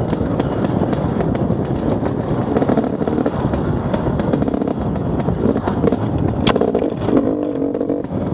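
Enduro dirt bike engine running and revving up and down as the bike rides a rough, twisting dirt trail, with the rattle of the bike over the ground. One sharp knock comes about six and a half seconds in.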